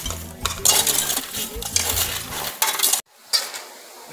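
Metal hoe blade chopping and scraping through weedy soil and rubble, a quick run of scrapes and strikes that cuts off abruptly about three seconds in.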